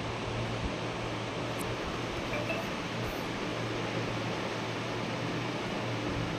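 Steady hiss with a low hum underneath, even throughout, with no distinct sounds standing out.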